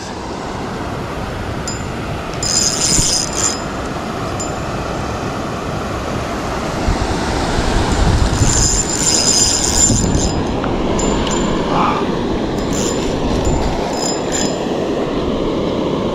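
A spinning reel whirring in several short, high metallic bursts as a hooked channel catfish is played and reeled in. Underneath runs the steady rush of a small waterfall.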